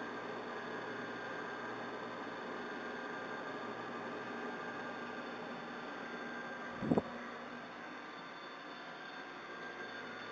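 Pellet stove's blowers running with a steady whirring noise and a low hum. A single short, low thump comes about two-thirds of the way through.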